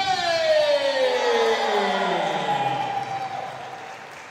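A siren-like wail that falls slowly in pitch over about three seconds and fades away.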